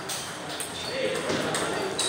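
Table tennis balls being struck by paddles and bouncing on the tables: a few short, sharp pings with a brief high ring, in a reverberant hall.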